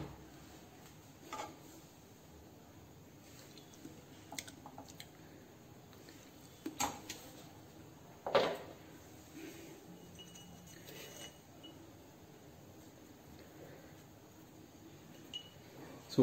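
A few scattered clinks of a metal spatula against a frying pan, the loudest about eight seconds in, between long quiet stretches.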